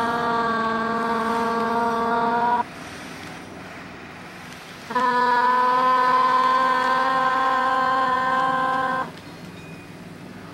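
A woman's voice holding a long, steady 'aah' into an electric fan, twice at the same pitch. The first note breaks off a couple of seconds in and the second runs about four seconds, with a low steady hum in the gap.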